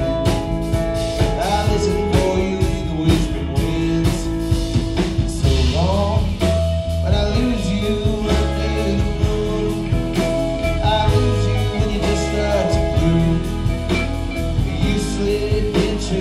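A live band playing a song: a male lead vocal over electric guitars, keyboards and a drum kit, loud and continuous.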